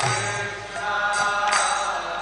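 Devotional chanting of a mantra, sung with a steady pitch line, accompanied by small hand cymbals (kartals) struck at a regular beat.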